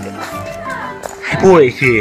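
A person speaking Thai loudly in a short burst near the end, over steady background music.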